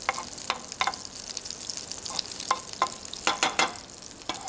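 Hamburger patties frying in olive oil in a frying pan over medium heat: a steady sizzle with scattered sharp crackles and pops.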